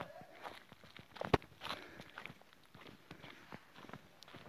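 Footsteps on rough, stony ground: irregular, faint steps and scuffs, one louder step just over a second in.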